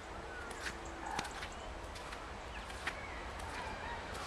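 Birds on a frozen pond giving faint, short calls at intervals over a low steady rumble, with a few sharp clicks.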